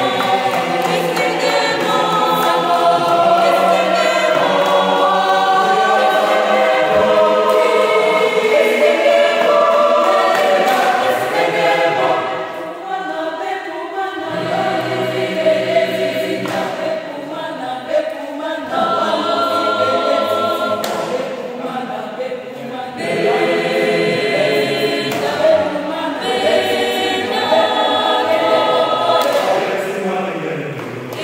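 Large mixed choir of men's and women's voices singing a cappella in parts. The singing eases off for a stretch in the middle, then swells again.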